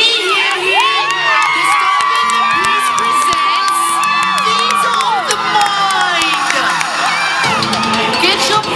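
Crowd cheering and screaming at a stroll performance, many voices whooping at once, with hand claps close by and one long high cry held for about four seconds starting about a second in.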